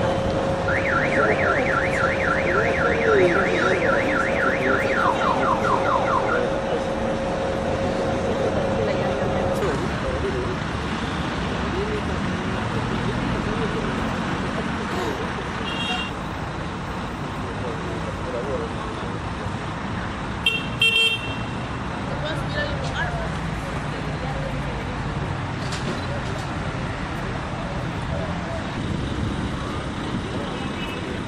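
An electronic vehicle siren or alarm sounds in quick rising sweeps, about four a second, for the first few seconds, then a handful of falling sweeps over a steady tone. After that a coach engine idles under voices, with a short burst of beeping about two-thirds of the way through.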